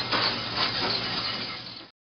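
Water spraying from a sink rinse hose onto a brass trumpet, rinsing it after ultrasonic cleaning: a steady hiss of running water that cuts off suddenly near the end.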